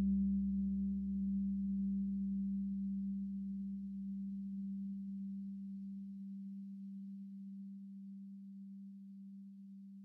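A single sustained low tone, steady in pitch, fading slowly away; a deeper rumble beneath it stops about six seconds in.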